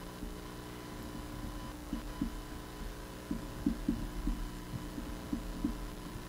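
Steady electrical hum from the sound system with faint, muffled low thuds scattered through it, coming more often in the second half.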